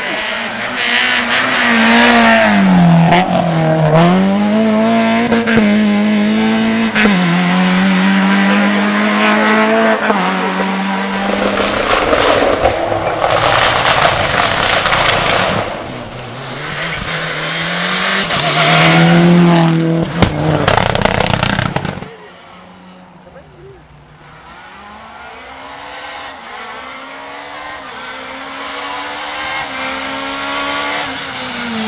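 Rally cars at full throttle on a tarmac special stage: an engine revving hard and falling back again and again through quick gear changes as the car brakes and accelerates past. After a sudden drop in loudness about two-thirds of the way through, another rally car is heard approaching, its engine climbing in pitch and growing louder toward the end.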